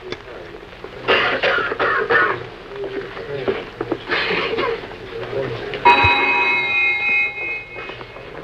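Walk-through metal detector alarm going off as a wrench is carried through: a steady electric buzzer tone of several pitches at once, starting with a click about six seconds in and cutting off abruptly after about two seconds. Its sounding shows the freshly repaired detector working again.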